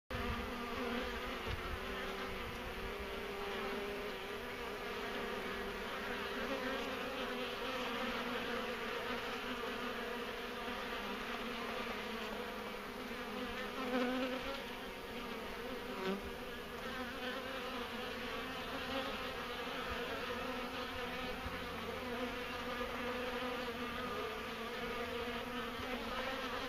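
A cast swarm of honeybees buzzing steadily at a top-bar hive entrance as the colony settles into its new hive, with workers fanning their wings at the entrance. The buzz swells briefly about halfway through.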